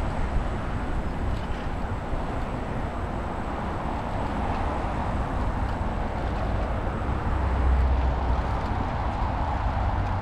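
Steady rushing noise of riding a bicycle along an asphalt path, with a deep rumble underneath and motorway traffic beyond the canal; the rumble swells briefly about eight seconds in.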